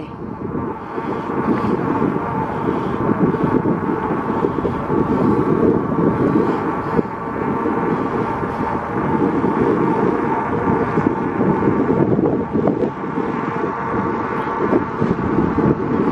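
Riding noise on an electric bike: wind rushing over the microphone and tyres on asphalt, with a faint steady whine from the e-bike's motor running throughout.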